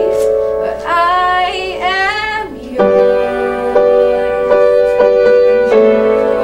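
A girl singing a gospel song while accompanying herself on piano: a sung phrase with gliding, bending notes in the first half, then sustained piano chords struck about once every three-quarters of a second.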